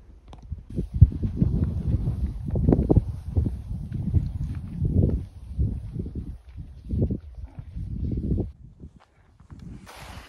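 Wind buffeting the microphone in irregular low rumbles, mixed with the footsteps of hikers walking on a snow-dusted mountain trail through tussock grass.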